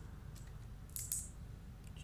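Quiet room tone with a low hum and a few faint, brief clicks or rustles, one about a second in.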